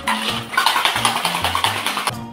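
Ice rattling hard inside copper tin-on-tin cocktail shaker tins being shaken, a fast, dense, continuous rattle.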